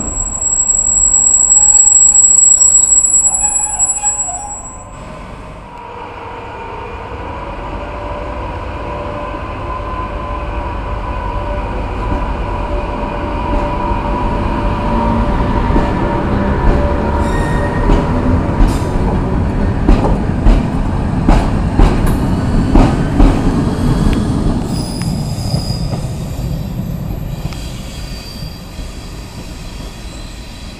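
Freightliner Class 86 electric locomotives moving off through a station. A loud, high-pitched squeal fills the first four seconds, then a steady hum builds into a rumble with sharp clicks of wheels over rail joints and points, and fades near the end.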